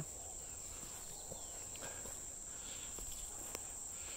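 Steady high-pitched drone of insects, with a few soft footsteps on bare dirt.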